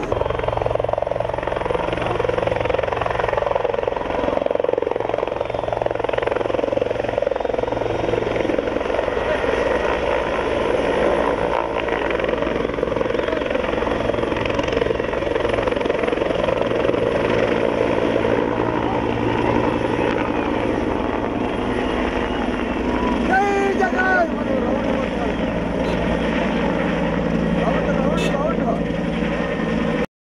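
Helicopter's rotor and turbine engine running steadily at full power as it lifts off from a dusty field and climbs away.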